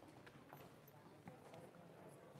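Faint, scattered footsteps and light knocks on a wooden stage floor as people walk about and shift equipment.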